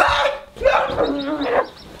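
A cartoon character's voice clip making wordless vocal sounds in two stretches, the second fading out about three-quarters of the way through.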